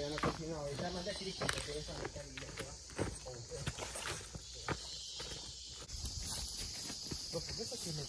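Footsteps crunching through dry leaf litter, with a steady high chirring of insects that grows louder about six seconds in. A person's voice is heard briefly at the start.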